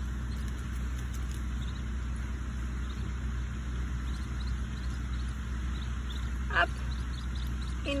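Steady low outdoor rumble, with one short sharp sound about six and a half seconds in.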